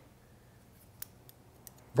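Hair-cutting shears snipping a section of wet hair: a handful of short, faint clicks in the second half, the first the loudest.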